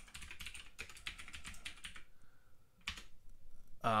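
Typing on a computer keyboard: a quick run of keystrokes for about two seconds, then a pause and a single keystroke a second later.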